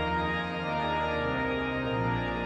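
The Methuen Great Organ, a large concert pipe organ (E.F. Walker 1863, rebuilt by Aeolian-Skinner 1947), playing sustained full chords over a deep pedal bass, the chord changing a little past a second in.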